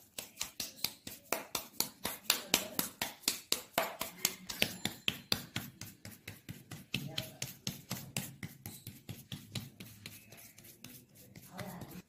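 Hands patting a ball of soft maize-flour dough flat on a damp cloth: quick, even pats, about five a second, getting quieter near the end.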